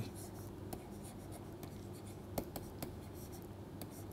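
Faint tapping and scratching of a stylus writing a word on a pen tablet, a handful of small sharp ticks spread irregularly over a low steady hum.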